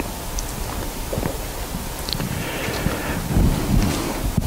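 Rustling and shuffling of a congregation getting to its feet, with a few small knocks.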